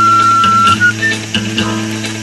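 Background music with plucked guitar over a steady beat; a long held high note sounds through the first half and gives way to a short run of melody notes.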